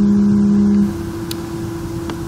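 A man's drawn-out hesitation hum held at one steady pitch, cutting off about a second in, over a constant low electrical hum. A faint click follows a little later.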